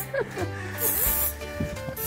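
Background music, with one short hiss of aerosol hairspray about a second in.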